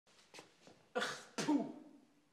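A man coughing twice, two short harsh coughs about half a second apart, the second trailing off lower.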